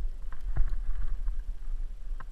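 Mountain bike rolling fast over a dirt woodland trail, heard through an action camera mounted on the rider or bike: a constant low wind rumble on the microphone, with scattered sharp rattles and knocks from bumps, the sharpest about half a second in.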